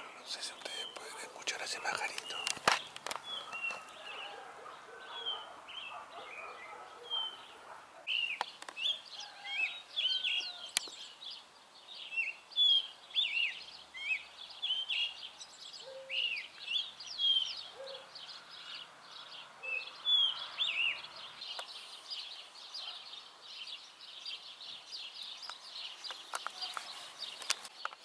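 Small songbirds chirping and singing before dawn, many short quick calls one after another in an early-morning chorus. A couple of sharp clicks sound about two seconds in.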